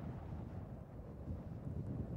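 Wind buffeting the microphone, a low, uneven rumble.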